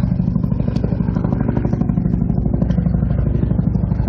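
Military helicopter flying overhead: a steady, loud engine hum with a fast, even rotor chop.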